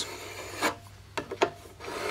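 Serrated edge of a stainless steel square drawn back and forth across the edge of a wooden block, sawing at the wood with a rasping scrape in short strokes.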